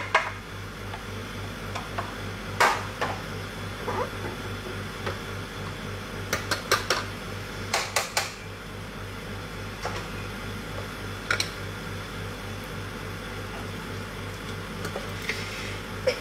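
Kitchen range-hood extractor fan humming steadily, with a scattering of sharp clinks and knocks from a utensil and containers against a wok, several close together in the middle.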